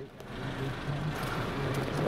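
Motor vehicle engine running nearby with road noise: a steady low hum and a hiss that swell in about half a second and then hold.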